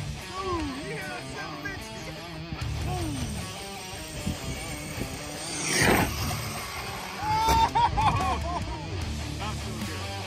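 A large 1/5-scale Losi DBXL RC buggy rushes past and launches off a jump ramp about six seconds in, a brief loud swell of motor and tyre noise, heard over background music.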